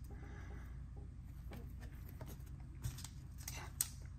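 A stack of Panini Select trading cards handled and thumbed through: faint sliding and rustling with a couple of light clicks near the end, over a low steady hum.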